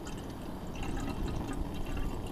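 Small camping gas stove burning with a steady hiss, its flames getting knocked around by a gusty wind.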